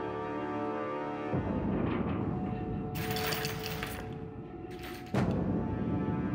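Tense dramatic score: held chords, then a sudden deep hit about a second in. A hissing swell builds in the middle, and a second deep hit lands near the end.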